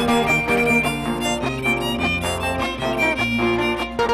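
Live folk string band: a violin carries the melody over a strummed acoustic guitar and a moving bass line, in an instrumental passage with no singing.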